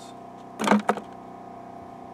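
Chunk of quartz rock knocking against a plastic bucket: a short clatter of two quick knocks about half a second in, over a steady hum.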